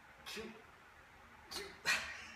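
A man's short, forceful breaths and grunts of effort while straining through bent-over dumbbell rear-delt raises, three bursts with the loudest near the end, as his shoulders give out.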